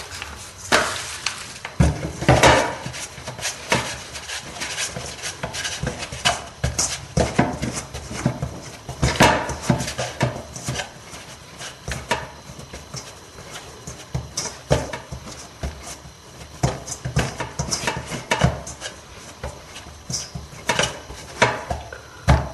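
Dough being kneaded by hand in a stainless steel bowl: an irregular run of thumps, knocks and rattles from the dough and the metal bowl, with a few louder knocks.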